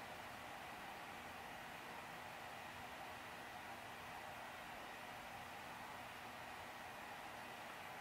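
Faint steady hiss of room tone with a faint steady hum; no distinct sounds.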